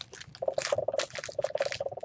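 Crinkly rustling of gift packaging being handled and moved about, with a steady low squeak running under it from about half a second in.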